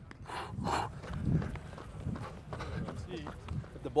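Footsteps and breathing picked up by a baseball player's body mic as he moves across outfield grass, with two short breath-like bursts near the start and low, uneven thuds after.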